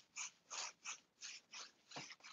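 Faint, short swishes of a paintbrush stroking over a painted wooden wardrobe, about three strokes a second.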